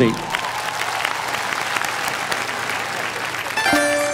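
Audience applause, a steady clapping. About three and a half seconds in, the live band starts the song's introduction with clear sustained notes under the clapping.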